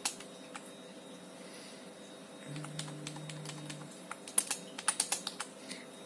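Computer keyboard keystrokes: scattered key clicks, then a quick run of presses about four seconds in, over a faint steady hum, with a short low tone in the middle.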